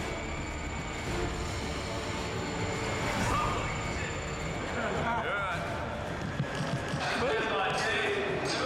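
Indistinct voices over a steady low rumble of background noise.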